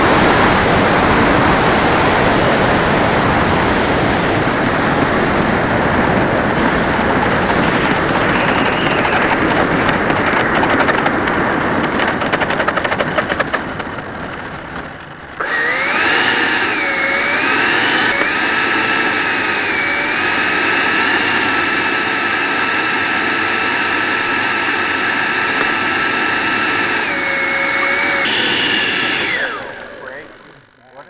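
Onboard sound of a Freewing T-45 Goshawk's 90 mm electric ducted fan, starting as a loud steady rush of air and fan noise that fades about halfway. Then a high fan whine comes in, its pitch stepping up and down with the throttle and holding mostly steady. The whine drops near the end and cuts off suddenly just before the end.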